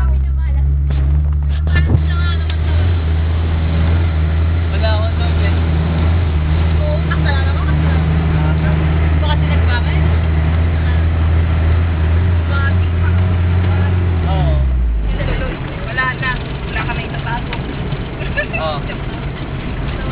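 Vehicle engine running with a steady low drone, heard from inside the cab, fading out about fifteen seconds in. Scattered voices sound over it.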